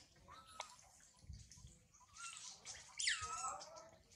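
Long-tailed macaque giving short high-pitched calls: a brief squeak near the start, then about three seconds in a louder cry that falls steeply in pitch and wavers for about half a second.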